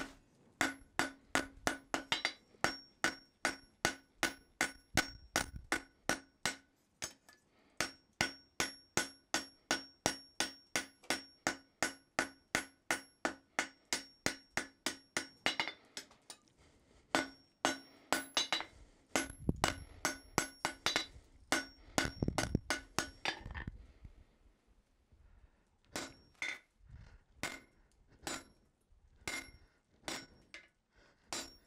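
Hand hammer forging a red-hot steel bar on an anvil, about three blows a second, each strike ringing. The hammering pauses briefly twice, and near the end there are only a few spaced blows.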